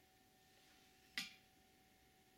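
Near silence: faint room tone with a steady hum, broken by a single sharp click a little past a second in.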